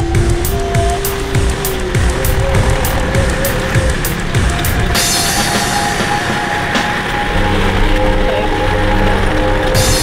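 Background music with a steady beat and a held melody; about halfway through, a steady rushing noise joins beneath it.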